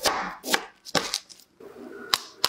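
Kitchen knife cutting through a firm block of thick-cut yogurt layered with chocolate sandwich cookies, the blade knocking on the board: several quick cuts in the first second or so.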